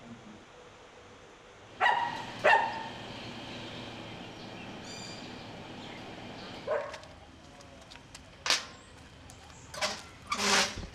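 Dogs barking: two sharp barks about two seconds in, then a few fainter barks later, over a steady outdoor background.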